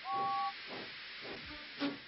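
Steam locomotive whistle sounding two notes together, held for about half a second, then the rhythmic chuffing of the engine's exhaust as it pulls away. Short musical notes come in near the end.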